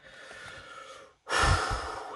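A man breathing: a faint breath in, then a louder, sharp breath out about a second and a quarter in.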